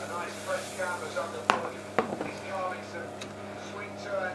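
Television sports commentary talking in the background over a steady low hum, with two sharp knocks about half a second apart as a frying pan is moved on a glass-topped electric hob.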